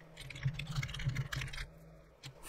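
Computer keyboard typing: a rapid run of keystrokes that stops shortly before the end.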